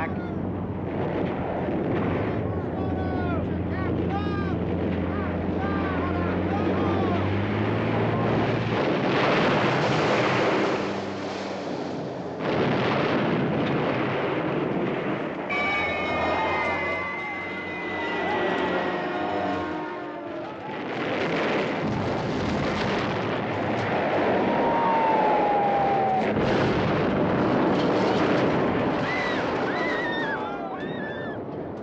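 Air-raid battle sounds: a dense, continuous din of explosions and aircraft, with shouting voices. A steady low drone fades out after about eight seconds, and a falling whistle comes about halfway through, with another near the end.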